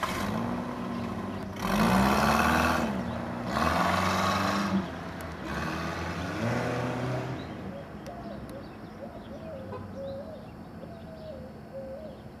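A station wagon's engine accelerating away down a street, its pitch rising and dropping several times as it goes through the gears, with road noise. It fades in the second half.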